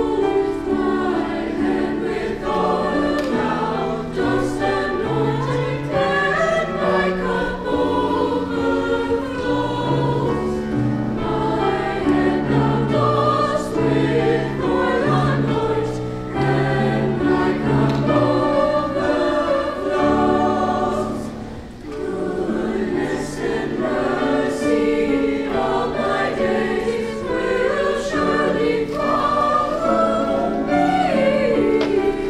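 Mixed choir of male and female voices singing in parts, with sustained notes and a brief dip in level about two-thirds of the way through.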